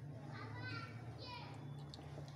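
A child's high-pitched voice, two short calls in the background, over a steady low hum.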